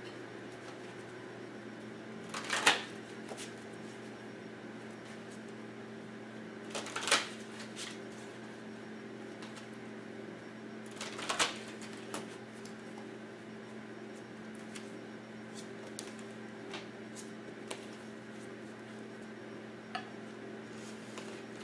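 A deck of oracle cards shuffled by hand in three short bursts spread over the first half, followed by a few light taps and clicks of cards being handled and set down. A steady low hum runs underneath.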